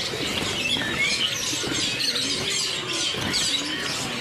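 Many caged birds chirping at once, a dense overlapping chatter of short high calls, with Java sparrows close by.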